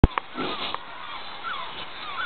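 A sharp click as the recording starts, then an outdoor background with repeated short calls that bend up and down in pitch, from animals or birds.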